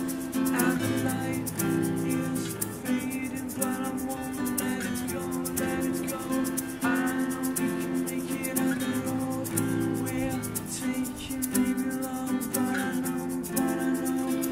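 Live acoustic band music: two acoustic guitars strummed together, with an egg shaker shaken in a steady, fast rhythm and notes from a toy xylophone.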